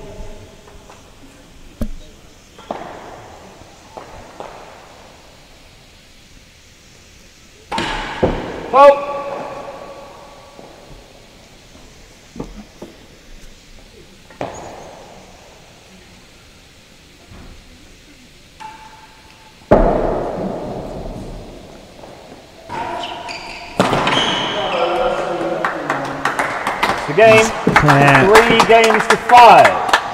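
Real tennis ball play in an indoor court: separate sharp knocks of the solid ball off racquets and walls, each echoing in the hall, the loudest about twenty seconds in. Near the end, voices and noise from the gallery rise in a louder stretch.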